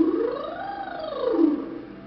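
A woman's lip trill, lips buzzing over a sung tone. The pitch glides smoothly from low to high and back down once, in about a second and a half, as an ascending and descending vocal warm-up exercise.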